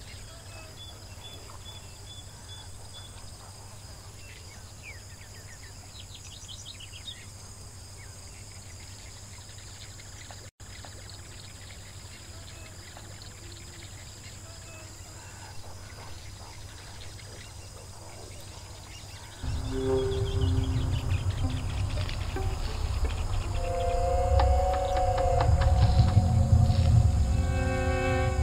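Quiet outdoor ambience with faint, scattered short high bird chirps. About three-quarters of the way through, background music comes in suddenly and loudly, with a deep bass and sustained higher notes.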